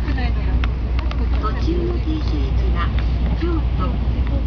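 Voices talking over the steady low rumble of a Tokaido Shinkansen car moving out of the station, with a few light clicks.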